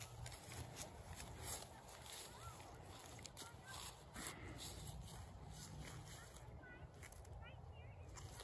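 Quiet outdoor ambience: a faint low rumble of wind on the microphone, with a few faint short chirps and small ticks.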